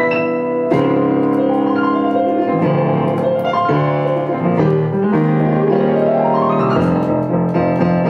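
Piano played through a set of chord changes: full, sustained chords that shift every second or so, with a rising run of notes about six seconds in.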